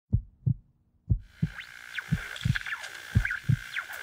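A heartbeat sound effect: paired low thumps about once a second. About a second in, electronic static with a steady high tone and sweeping, whistling glides joins it, as the sound design of a podcast's sci-fi-style intro.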